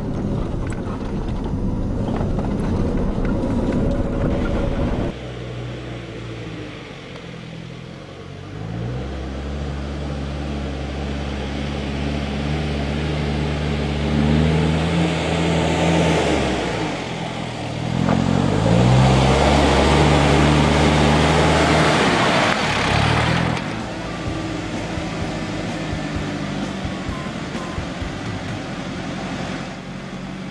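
Four-wheel-drive engines labouring up steep loose-dirt mounds: the revs climb and hold twice, each time dropping away again, with tyres crunching and scrabbling on dirt and stones during the loudest revs. A steadier engine rumble at the start cuts off abruptly a few seconds in.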